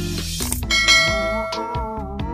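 Background pop music with a bright bell chime struck about two-thirds of a second in and ringing on: the notification-bell sound effect of an on-screen subscribe-button animation.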